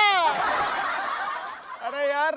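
A man's loud shouted cry that falls in pitch and trails off, followed by a breathy hissing rush that fades over about a second and a half.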